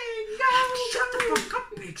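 A person's voice chanting a long, high held note that wavers slightly in pitch, with brief breaks for breath.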